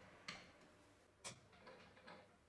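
Faint, sharp clicks of small hand tools and screws on a brass plate in a wooden case: two distinct clicks about a second apart, with a few fainter ticks after the second.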